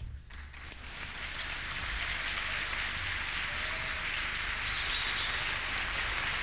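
Audience applause at the end of a free-jazz performance. Scattered claps swell within about a second into dense, steady clapping, as the last drum hit rings out at the start.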